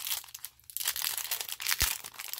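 Small clear plastic zip bag crinkling and rustling as fingers pull it open, with a sharp click near the end.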